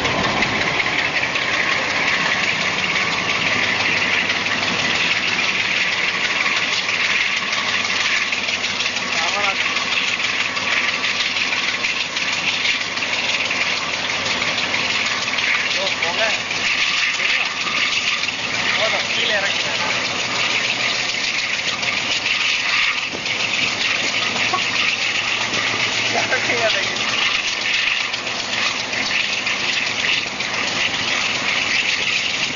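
WDM-7 diesel locomotive's ALCO engine working hard under load, heard close from the train as a steady, loud running sound with continuous wheel-on-rail and rushing-air noise. The thick black exhaust shows the engine is pulling hard.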